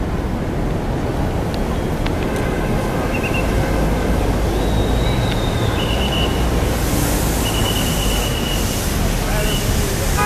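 Wind rumbling on the microphone of a moving bicycle, riding in a large group of cyclists through city traffic. Several short high-pitched squeals come from about three seconds in until near the end.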